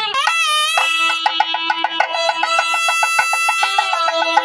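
Traditional temple music: a melody held in long, steady notes, with a quick pitch sweep near the start, over rapid, evenly spaced drum strokes.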